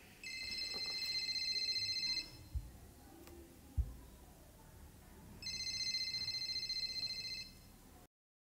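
An electronic ringing tone sounds twice, each ring about two seconds long, with a pause of about three seconds between them. Two short dull thumps fall in the pause.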